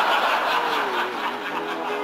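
Audience laughing, the laughter strongest at first and dying away.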